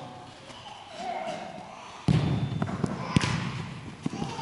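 Futsal ball being kicked and thudding on the court, with a sudden loud thud about two seconds in and a sharp kick a little after three seconds, amid players' calls echoing in a large indoor hall.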